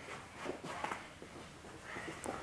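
Faint footsteps of children running on a carpeted gym floor, a few soft, irregular footfalls.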